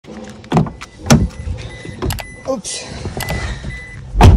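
Car door being opened from outside: the door handle pulled and the latch clicking, followed by a few separate knocks and clicks as someone gets into the car.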